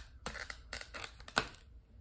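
A Scentsy bar's plastic clamshell pack crinkling and crackling as it is handled and opened, with one sharp snap about one and a half seconds in.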